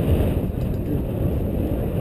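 Steady, gusty low rumble of wind buffeting a small action camera's microphone on a moving open chairlift.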